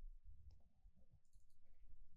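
A quick run of faint clicks about one and a half seconds in, from computer input while working the trading software. Otherwise near silence with a low hum.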